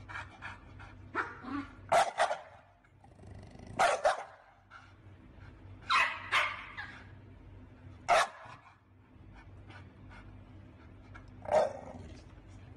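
An American Bully barking with its head through a pet-door flap: a series of loud barks, one every two seconds or so, some doubled, with smaller sounds between them.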